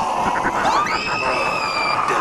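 Several people screaming together, with one high scream rising sharply about two-thirds of a second in and then held.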